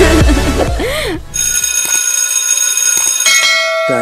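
Electronic dance music cuts off about a second in, and a bell then rings, struck twice about two seconds apart, each strike ringing on.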